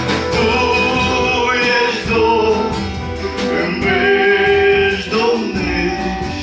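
Acoustic guitar strummed in a steady rhythm under a man's sung melody with long held notes: a gospel song.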